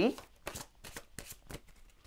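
A tarot deck being shuffled by hand: a run of soft, quick card clicks and slaps.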